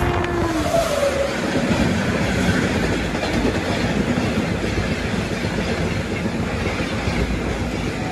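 Indian Railways trains running at speed past each other: a steady loud rush and rumble of steel wheels on rails, heard from an open coach doorway, with a brief falling tone in the first second or so as the oncoming electric locomotive passes.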